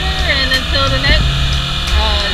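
Kawasaki Ninja ZX-6R inline-four motorcycle running at road speed, with heavy wind rumble on the helmet microphone; its steady engine note drops slightly about a second in.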